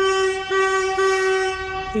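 Locomotive horn on a goods train sounding one long, steady, single note, with two brief dips about half a second and one second in.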